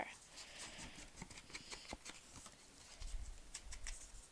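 Faint rustles and small clicks of paper pieces and an ink pad being handled on a countertop, with a soft low bump about three seconds in.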